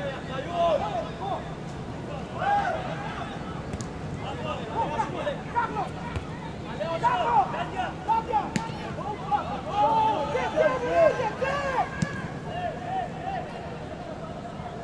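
Footballers and coaches shouting to each other across an open football pitch in short, scattered calls. A few sharp knocks of the ball being kicked come through, about four seconds in, past the middle, and near the end.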